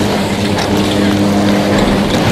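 Detachable chairlift terminal machinery running: a loud, steady mechanical drone with a low hum as chairs move through the loading station.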